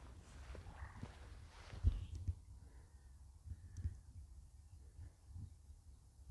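Faint outdoor background: a low, uneven rumble with a few soft bumps, typical of wind and handling noise on a hand-held phone microphone.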